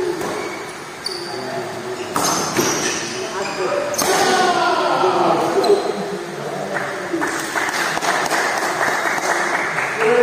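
Badminton rackets striking a shuttlecock during a rally, sharp cracks about two and four seconds in, heard over the voices of players and spectators in an echoing hall.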